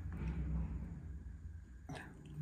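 Quiet pause: a low steady room hum with a faint, brief rustle in the first half-second.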